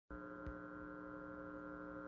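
Steady, fairly quiet electrical mains hum with many overtones, with one faint tick about half a second in.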